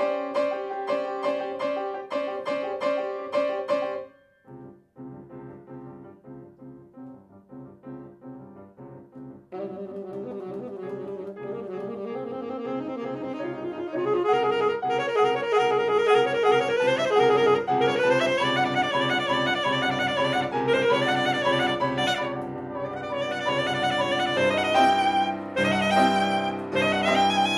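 Soprano saxophone and grand piano playing a classical duo. Held saxophone notes over the piano open, then the music drops to a quiet passage of piano alone; the saxophone comes back in about ten seconds in, and the playing grows louder from about fourteen seconds.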